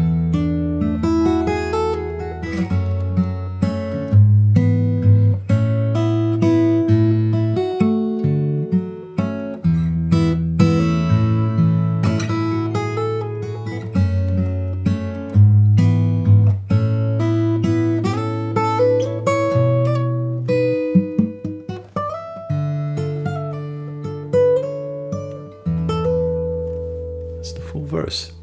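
Steel-string acoustic guitar played solo fingerstyle: sustained bass notes ringing under a single-note melody and chords, at a slow, mellow pace, starting with a sudden strike.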